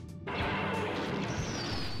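Cartoon sound effect: a sudden rushing blast starts about a quarter second in and holds, with a thin high whistle falling in pitch near the end.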